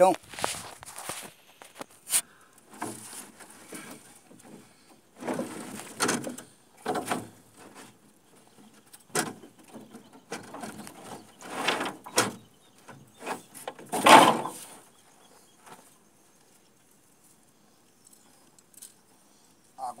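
Nylon cast net with lead sinkers being handled and gathered in an aluminium boat: irregular rustling, scraping and jingling, with sharp knocks of the weights against the metal hull, the loudest about fourteen seconds in. The last few seconds are nearly quiet.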